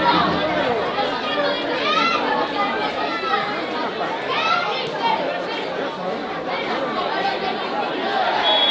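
Several voices chattering and calling out over one another, from players and spectators at a youth football match, with a few louder shouts about two and four and a half seconds in.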